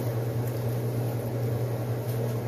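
A steady low hum from a running kitchen appliance, even throughout, with a broad hiss over it.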